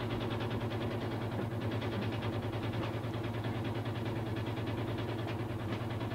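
A steady low hum with an even hiss over it, unchanging throughout, with no distinct knocks or strokes.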